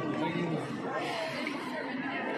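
Crowd chatter: many people talking at once, their voices blending into a steady hubbub inside a large stone-domed hall.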